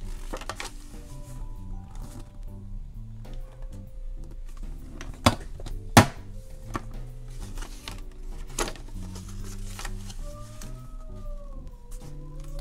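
Envelope punch board punching cardstock: two sharp clunks a little after five and six seconds in, the second the loudest, with lighter knocks of paper being handled on the board, over soft background music.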